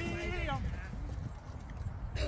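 A person's voice calling out once at the start, drawn out for about half a second before dropping off, over a steady low rumble of wind on the microphone.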